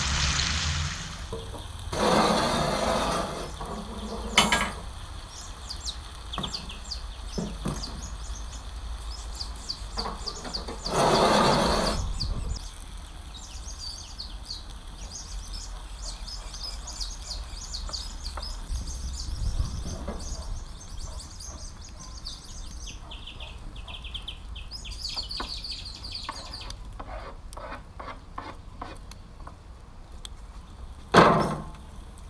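Diced potatoes, onions and carrots sizzling in a cast-iron pan over a wood fire, loudest at first. Two brief louder bursts of clatter follow, then a quieter stretch of small high chirps and crackles.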